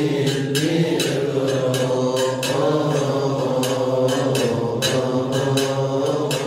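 Coptic liturgical chant: men's voices holding a slow, melismatic line, with sharp regular strikes sounding about two to three times a second.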